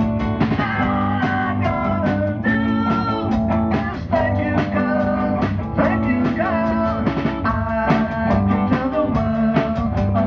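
Live rock band playing: electric guitars and a drum kit keeping a steady beat, with a lead vocalist singing over them.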